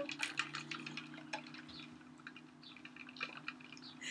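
Faint sipping of a drink through a plastic straw from a tumbler cup: a scatter of small wet clicks, most of them in the first second and a half, then only a few.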